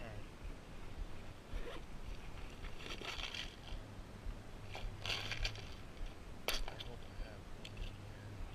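Rustling and scraping of fishing tackle being handled: a soft plastic lure, a tackle bag and a plastic tackle box, in a few short bursts, with one sharp click about six and a half seconds in.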